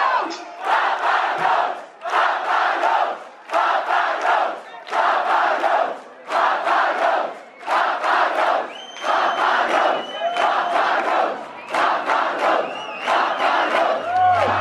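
Concert crowd chanting in unison, a loud shout about every second and a half, as the band takes its final bow at the end of the set.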